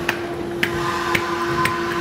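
Small foam paint roller rolled back and forth through epoxy resin in a plastic roller tray, with light clicks about twice a second as it moves, over a steady hum.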